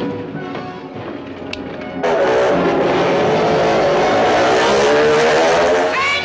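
Motorcycle engine running loud on a wall-of-death track, cutting in suddenly about two seconds in, its pitch wavering as it circles. Music plays underneath.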